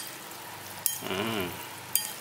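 Sauced rice noodles being tossed with chopsticks and a metal spoon in a ceramic bowl: a soft, steady wet rustle, with a light click of utensil on the bowl about a second in and another near the end. A short hum of a voice falls between the clicks.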